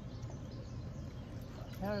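Low, steady outdoor background rumble with no distinct event, and a woman's voice starting near the end.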